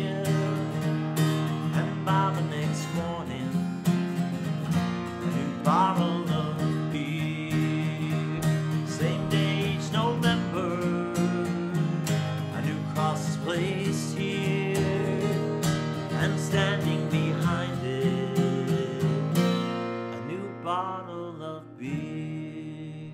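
Solo acoustic guitar playing an instrumental close to a folk song, notes picked and strummed with a few that slide in pitch. Near the end the playing thins out and the sound dies away.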